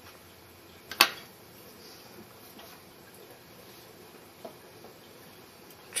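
A single sharp click about a second in, then a few faint small ticks over quiet room tone, from handling fly-tying tools and materials at the vise.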